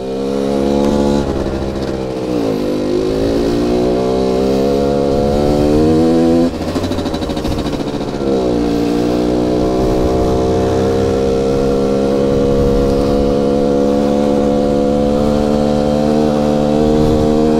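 Rieju MRT 50's small two-stroke engine pulling the moped along. Its pitch climbs, falls back twice as the revs drop, then climbs again and holds steady.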